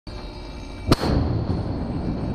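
A Mark 45 5-inch naval gun fires a single round about a second in: one sharp, loud report followed by a low rumble that carries on. Before the shot there is a steady background rush.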